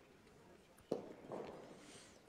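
A single sharp knock about a second in, with a short ringing tail, against a faint background.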